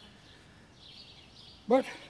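Quiet outdoor background with a faint, wavering high-pitched sound, then a man says a single word near the end.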